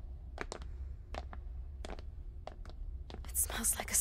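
Low, steady room hum with soft, scattered clicks at uneven intervals. Near the end comes a breathy, whisper-like voice sound.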